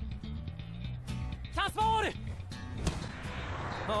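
Anime volleyball-match soundtrack: background music with several sharp hits, and a short shouted voice about halfway through.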